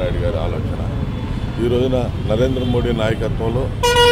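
A man speaking, over a steady low rumble of road traffic. A vehicle horn starts sounding right at the end.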